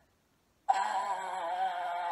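Near silence for most of a second, then a woman's voice holding one long, slightly wavering vocal note: a drawn-out thinking sound.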